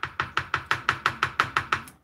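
Spatula knocking rapidly and evenly against a metal baking pan, about seven taps a second, each with a brief metallic ring; the taps stop just before the end.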